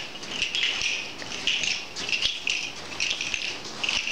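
Irregular rustling and crackling, a soft burst every half second or so.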